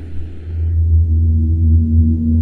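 A deep, steady drone with sustained ringing tones above it, swelling up over the first second: a sound effect laid under the levitation.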